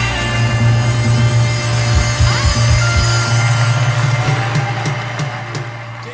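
Live rock and roll band playing an instrumental passage with no singing, electric guitar over bass and drums; it fades down near the end.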